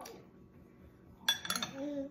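Metal spoon clinking against a plate: a quick cluster of sharp, ringing clinks about a second and a half in.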